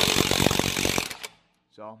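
Cordless impact wrench hammering a lug nut loose on a truck wheel, a fast steady rattle of impacts that stops about a second and a quarter in.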